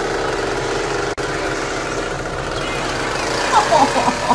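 Chainsaw engine running steadily with a rapid low pulsing. A voice cries out briefly near the end.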